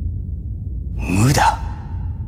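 A man's short sigh about a second in, with a ringing echo that fades out over about a second, over a steady low rumble.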